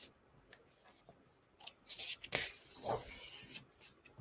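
A picture book's page being turned: a soft paper rustle lasting about two seconds, starting a little over a second in.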